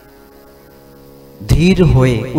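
Steady low electrical mains hum with a buzz of many even overtones, then a man's voice comes in loudly about one and a half seconds in.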